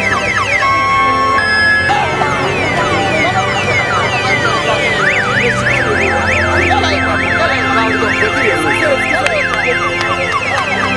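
Several electronic sirens and alarms sounding at once, with repeated falling wails and, from about halfway, a fast up-and-down yelp, over music with a bass line.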